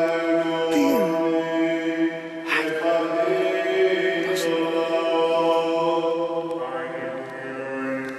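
Male voice chanting a Greek Orthodox scripture reading in Byzantine style, holding long notes that step to a new pitch a few times.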